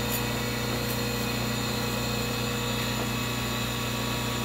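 Surface grinder running with a steady hum as its wheel works a pass across hardened steel parallels made from old hand files.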